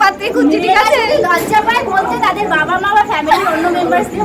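Only speech: several women talking over one another in lively chatter.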